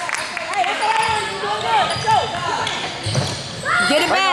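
Indistinct voices of spectators and players talking and calling out, ringing in a gym's hard-walled hall.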